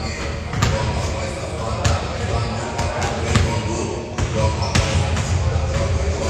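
A basketball bouncing on a hardwood gym floor, sharp bounces at an uneven pace of roughly one every half second to a second.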